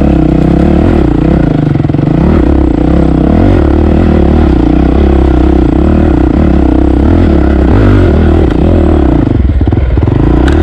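Dirt bike engine running on a rough trail, the revs rising and falling over and over as the throttle is worked, easing off briefly near the end.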